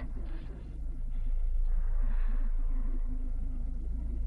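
A pause with no speech: only a steady low hum and faint hiss from the recording, swelling slightly in the middle.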